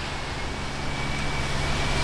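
Street traffic noise: a steady low engine hum, with a faint thin high tone starting about half a second in.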